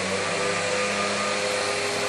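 A steady machine drone: an even whooshing hiss with a low, constant hum under it.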